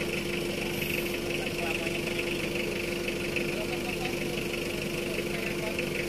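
Vehicle engine idling steadily, a constant hum with no revving.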